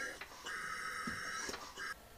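Compressed air at about 10 psi hissing with a whistling tone through the air line and valve of a small four-stroke engine converted to run on air. The hiss breaks off briefly twice and stops just before the end.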